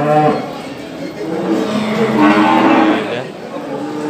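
Cattle mooing: one long, steady moo in the middle.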